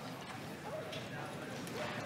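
Faint, indistinct voices in a large hall, with a couple of light knocks about a second in and near the end.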